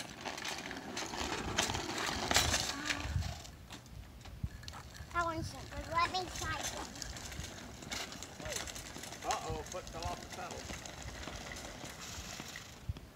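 Child's bicycle with training wheels rolling over asphalt, the training wheels and frame rattling and clattering irregularly, loudest in the first few seconds.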